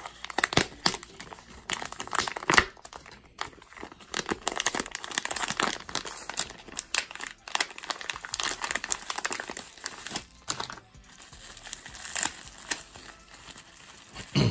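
Plastic packaging crinkling and crackling in irregular sharp bursts as a clear plastic pouch and a metallic bag are opened by hand and a red bubble-wrap sleeve is pulled out, with a short lull about eleven seconds in.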